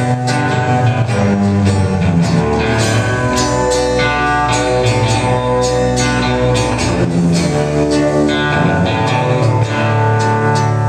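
Live rock band playing the instrumental opening of a song: electric and acoustic guitars over upright bass, with drums keeping a steady beat.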